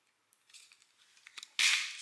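Hands working open a small perfume sample card: light clicks and rustling, then a short, sharp burst of noise near the end.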